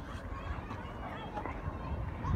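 Distant hubbub of many schoolchildren shouting and playing at recess, faint and blurred together, over a steady low rumble.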